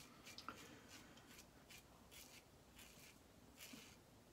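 Karve aluminium double-edge safety razor scraping through stubble under shaving lather, in a series of short, faint, scratchy strokes, roughly three a second.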